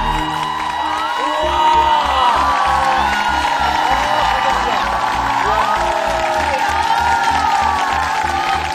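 A held final note of the song's backing ends just after the start, then studio show music with a steady quick beat comes in about a second and a half later. Over it, a studio audience applauds and cheers, with whoops.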